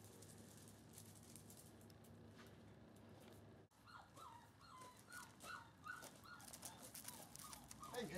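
36-day-old German Shorthaired Pointer puppies whimpering: a run of about eight short, high whines in the second half, faint, after a steady low hum.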